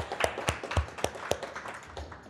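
Hand claps, about four a second, thinning out and dying away after about a second and a half.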